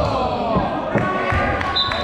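Basketball bouncing on a hardwood gym floor, with players shouting, echoing in a large gym.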